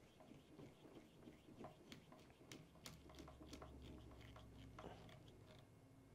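Faint clicks and creaks of a hand screwdriver driving a small screw into the plastic rear bumper mount of a Traxxas Slash 4x4, with a faint low hum in the middle.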